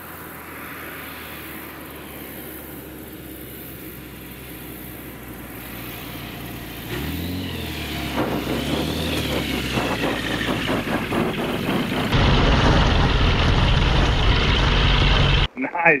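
Light bush plane's engine and propeller heard from outside as it lands on a gravel river bar: a steady drone that grows louder and rises in pitch from about seven seconds in, with a rapid rattling beat as it rolls in. About twelve seconds in the sound switches to the loud, low engine and propeller noise inside the cockpit.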